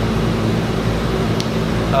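A steady, unchanging low machine hum, with a faint click about one and a half seconds in.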